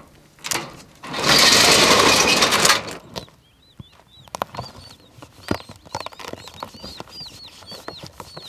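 A loud, rough rush of noise lasting about a second and a half, then many short, high chirps from small birds, with scattered light knocks.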